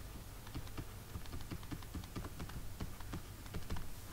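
Stylus tapping on a drawing tablet as block letters are handwritten: a quick, irregular run of light clicks, several a second.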